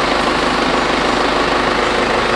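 John Deere 6110 tractor's four-cylinder diesel engine idling steadily, heard from inside the cab.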